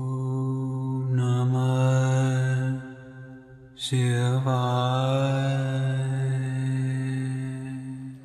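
A man chanting two long held syllables, each sustained on one steady low pitch; the first fades out a little before three seconds in, and the second begins about a second later and tapers off near the end.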